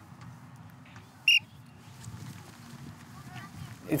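Low, steady outdoor background noise on an open practice field, broken a little over a second in by a single short, high-pitched chirp.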